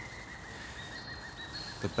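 Quiet outdoor background with a faint, thin high-pitched whistle that wavers slightly, and no voice.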